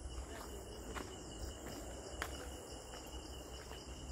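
Forest insects calling in a steady, high-pitched chorus, with a few faint footsteps on a stone path.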